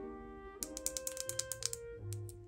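A quick run of about a dozen sharp plastic clicks, about ten a second, from two plastic markers being handled and knocked together, over soft background music.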